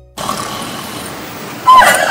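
Steady outdoor background hiss, then a loud voice cuts in near the end.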